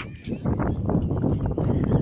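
Wind buffeting the phone's microphone: a loud, gusty rumble with irregular flutter that comes in about half a second in.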